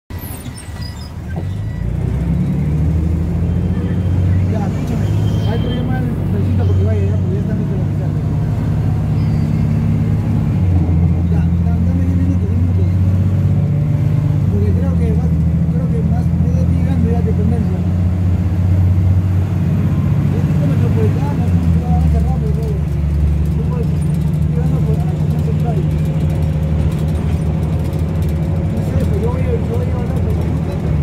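Articulated bus-rapid-transit bus heard from inside the cabin, its engine and drivetrain running with a loud low drone that swells about two seconds in as it pulls away and shifts in pitch several times as it moves through its gears.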